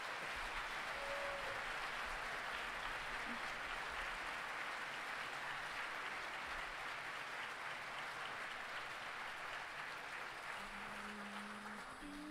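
Audience applauding steadily, fading slightly toward the end. A held low note comes in near the end.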